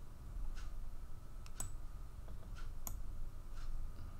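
Faint, even ticking about once a second, with two sharper clicks near the middle, over a low steady hum.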